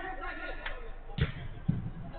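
Two dull thuds of a football, about half a second apart in the second half, as the ball is struck or bounces during play on artificial turf.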